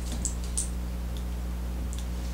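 Small scissors snipping a few times, making fine trimming cuts on a glo bug yarn egg on a fly. A steady low hum lies under it throughout.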